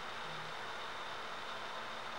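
Steady low hiss with a faint hum underneath, no distinct events: background noise in a pause of the voiceover.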